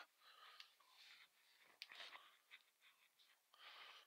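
Faint rubbing of a cloth rag wiping spilled oil off the engine crankcase and oil-line bleed screw, with a single faint click about two seconds in.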